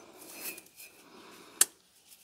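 Gloved hands handling a steel axe head and rubbing it with a cloth, a faint rustle, with one short sharp click about one and a half seconds in.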